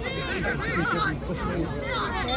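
Indistinct chatter of several voices talking and calling out over one another, from the small crowd and players around a free kick.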